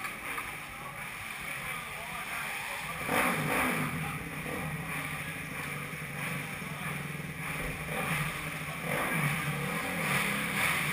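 A motorcycle engine starts about three seconds in and runs steadily at idle.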